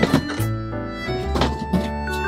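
White plastic storage-box lids being set down and pressed onto their boxes: a short plastic knock right at the start and another about a second and a half in, over background music.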